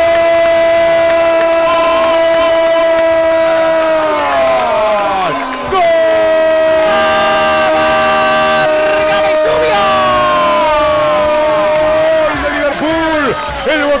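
Radio football commentator's drawn-out goal cry, "¡Gol!", held on one high note for about four and a half seconds and then falling. A second long held cry follows from about six seconds to twelve, with a stadium crowd cheering underneath. It is the call for a penalty kick converted.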